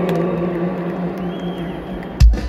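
Live band holding one long sustained note, just before the music comes back in.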